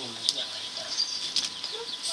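Steady sizzling hiss from a wok over an open wood fire, with a few sharp clicks through it and a short voice near the end.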